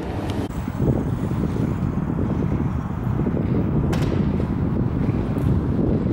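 Metro train at an underground platform behind glass platform screen doors: a steady low rumble of the train and the station, with wind noise on the microphone.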